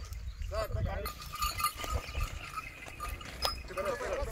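Men's voices talking in the background with a steady wind rumble on the microphone; a thin steady tone runs through the latter part.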